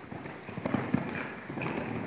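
Hoofbeats of a horse cantering past on the soft sand footing of an indoor arena: a run of dull, uneven thuds, loudest as it passes about a second in.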